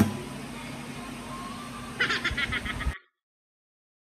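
Acoustic guitar's final strum dies away into low room noise. About two seconds in comes a brief giggle, a quick run of short pulses lasting about a second, and then the sound cuts off abruptly to silence.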